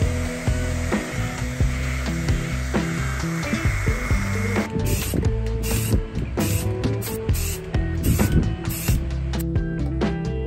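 Background music over a DeWalt cordless random orbital sander running steadily, which stops about halfway through; then an aerosol spray paint can hisses in several short bursts.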